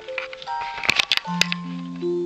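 A piece of music played through the active transistor L-C audio filter and heard from a loudspeaker in the room: a run of held melodic notes, a few sharp clicks in the middle, and a low sustained note coming in near the end.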